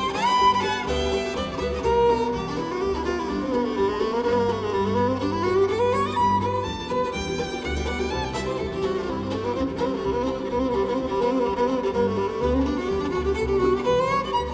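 Live acoustic string band playing an instrumental break: a bowed fiddle carries the lead, with notes that slide up and down in pitch, over mandolin backing and a low bass line.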